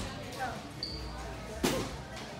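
A single dull thud about one and a half seconds in as a child pushes off the padded foam box tops to jump for a hanging rope. Faint voices sound underneath.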